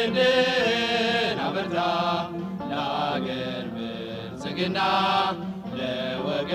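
Vocal music: voices singing long, held, chant-like notes, each lasting a second or two with short breaks between phrases.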